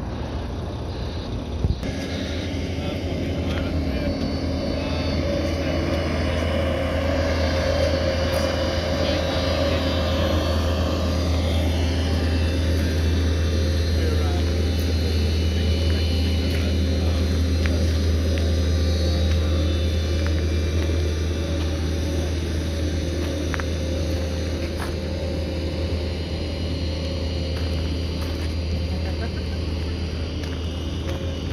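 A heavy engine running steadily with a low hum, growing louder over the first several seconds and easing off toward the end. A single sharp click comes about two seconds in.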